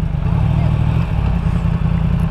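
Yamaha MT-10's crossplane inline-four engine running steadily at low revs while the motorcycle rolls slowly, a deep even rumble with no rise or fall in pitch.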